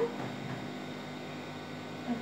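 Steady low background hiss and hum: room tone, with no distinct sounds.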